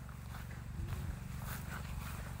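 Low, fluttering rumble of wind buffeting a phone microphone outdoors, with faint rustles.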